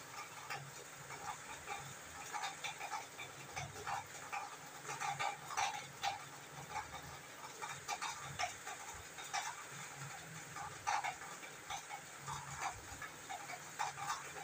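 A metal spoon stirring chicken pieces through thick gravy in a steel pan: irregular short scrapes and knocks against the pan, about one or two a second.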